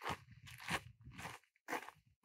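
Footsteps crunching on a gritty red dirt path, a few faint steps in a row.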